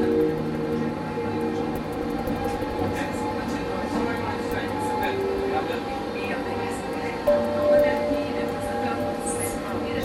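Inside a moving tram: steady running noise of the wheels and motor on the rails. A steady tone sets in about seven seconds in.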